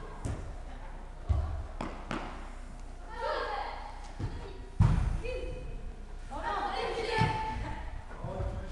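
A football thumping loudly twice, about a second in and again just before the middle, with a few lighter knocks, while players call out to each other in a large reverberant sports hall.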